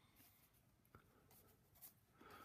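Near silence, with faint pencil and paper sounds on a worksheet: two small ticks, one about a second in and one near the end.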